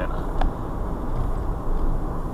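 Steady low road and engine rumble inside a moving car's cabin, cruising at about 26 mph.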